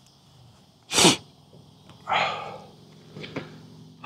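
A man blowing his nose into a paper napkin: one short, sharp blast about a second in, then a second, longer blow about two seconds in.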